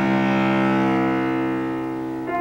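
Cello and piano in a slow classical piece: a chord struck just before rings on and slowly fades, with no new note inside the stretch.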